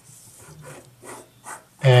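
Faint scratching of a marker tip drawing on paper, a few short strokes.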